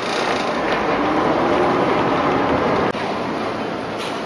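Water bus under way: its engine running with water rushing past the hull, a steady noisy rush. It swells over the first three seconds, then drops suddenly with a click.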